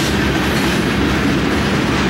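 A freight train's covered hopper cars rolling past close by, a steady, continuous noise of steel wheels running on the rails.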